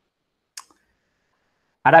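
A single short, sharp click about half a second in, with silence around it; a man's voice starts just before the end.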